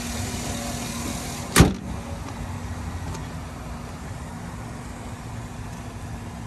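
The hood of a 2009 Chevrolet Silverado 1500 is slammed shut about a second and a half in, a single loud thump. Under it the truck's 5.3-litre V8 idles steadily.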